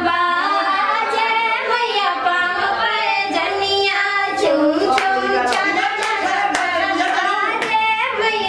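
Women's voices singing a devotional song, with hand claps keeping time roughly twice a second.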